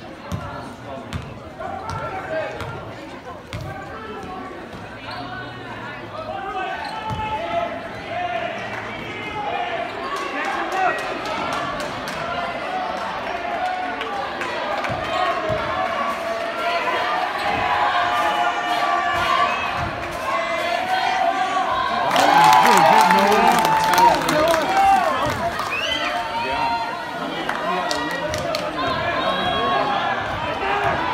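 A basketball bouncing on a hardwood gym floor during play, a run of sharp thuds, with spectators' voices throughout. The crowd gets louder about twenty-two seconds in.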